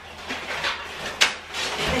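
Rustling and scraping as rubbish and cardboard are handled at a kitchen trash can, with a sharp knock just after a second in.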